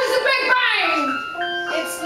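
A woman singing a sung phrase with instrumental accompaniment; the voice ends about a second in and steady held accompaniment notes carry on.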